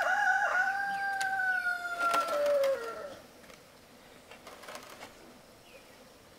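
A rooster crowing once, a long held crow of about three seconds that drops in pitch at the end. A few light knocks sound during it.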